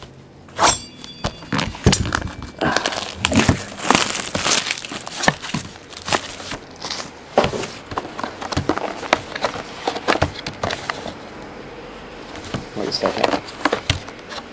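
Plastic shrink-wrap torn and crumpled off a sealed cardboard box of trading cards, a busy run of crinkling and tearing with knocks as the box is opened and its packs are handled and set on the table.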